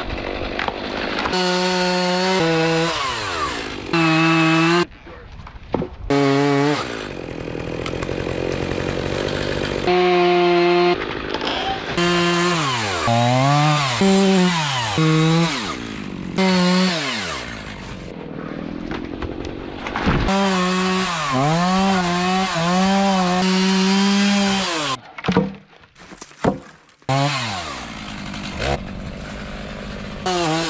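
Gas two-stroke chainsaw cutting through small trees, revving up and then sagging in pitch as it bites into the wood, again and again, with short breaks between cuts.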